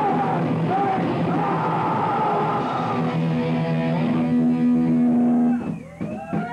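Live punk/metal band (two guitars, bass and drums) playing loud, with singing in the first half. From about three seconds in, the band holds a final chord that cuts off shortly before the end as the song finishes.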